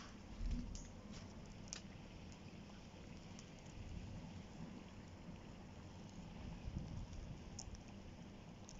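Faint crackling of a fire in a steel mangal burning the insulation off a heap of copper cables, with a few sharp pops. A low thump about half a second in.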